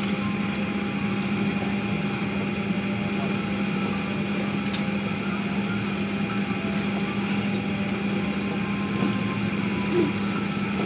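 Steady cabin hum inside a parked airliner: a constant low drone with a faint higher steady tone, from the aircraft's air-conditioning and onboard power running while it waits at the gate.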